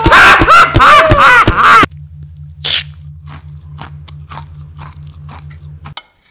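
Loud, distorted, voice-like squeals that glide up and down with sharp clicks, over a low pulsing hum. About two seconds in they cut off abruptly, leaving a faint low pulse at about four beats a second with scattered soft clicks.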